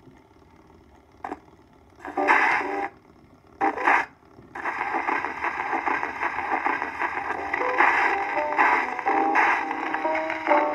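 Acoustic horn gramophone playing a reproduction 10-inch Berliner record: a click about a second in as the needle goes down, two short loud chords near two and four seconds, then the recording's instrumental introduction running on from about four and a half seconds.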